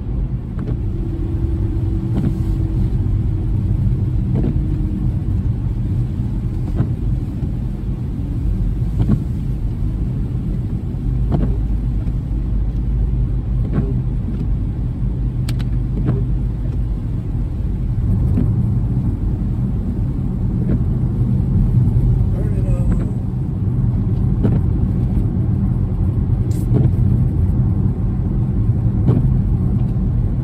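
Steady low rumble of a car driving on a wet road, heard inside the cabin, with scattered faint ticks.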